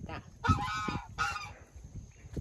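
Geese honking: two short calls, one about half a second in and another just after a second in.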